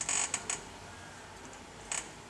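A pause in speech with quiet room tone, a short hiss at the very start and another brief hiss just before the end, typical of the tail of a spoken word and an intake of breath.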